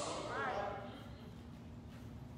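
A pause in a man's amplified speech: a brief faint voice about half a second in, then quiet room tone with a faint steady hum.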